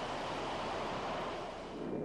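Jet engines running: a steady rushing noise with a faint high whine in the first part.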